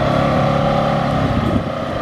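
Can-Am Defender 1000 side-by-side on Camso snow tracks driving off through deep snow, its engine running steadily and easing off a little after about a second.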